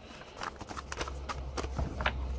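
A few irregular light clicks and taps over a low steady hum.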